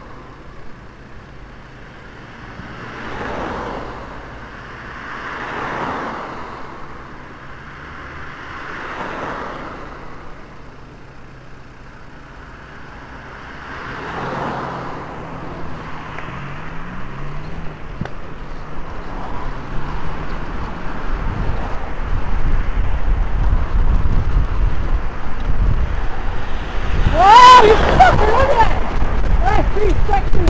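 Road traffic heard from a moving bicycle: cars pass one after another, each swelling and fading, then an engine rises in pitch as a car pulls away, and wind rumble on the microphone builds as the bike gathers speed. Near the end a louder pitched sound sweeps up and down, the loudest moment.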